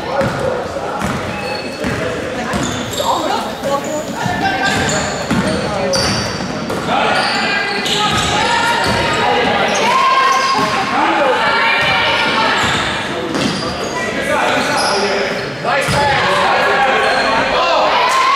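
A basketball being dribbled on a hardwood gym floor, with players and spectators calling out in the echoing gym.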